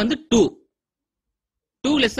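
A man's voice speaking, with about a second of dead silence in the middle before the talk resumes.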